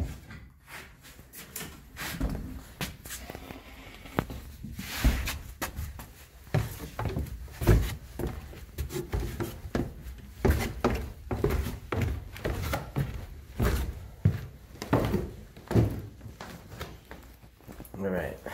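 Footsteps going down basement stairs: a string of irregular thumps, with handling noise from a handheld camera.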